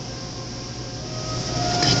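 Water in a dog hydrotherapy pool sloshing as a wet dog moves, over a steady low hum.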